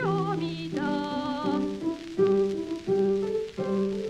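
Female voice singing a Japanese children's song (dōyō) with vibrato over piano, the sung phrase ending about a second and a half in. The piano then carries on alone, striking chords about every 0.7 seconds.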